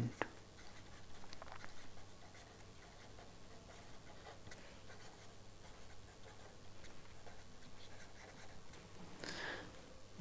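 Faint scratching of a pen writing on paper, coming in short runs of strokes as words are written out by hand.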